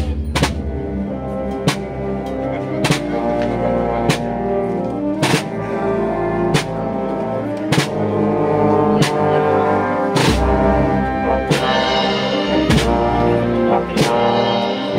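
Municipal wind band playing a slow processional march: held brass and wind chords with a drum stroke about every 1.2 seconds.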